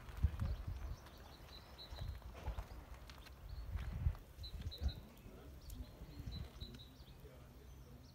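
Footsteps crunching on a gravel path, uneven and irregular, over a low outdoor rumble. A few short, faint bird chirps come now and then.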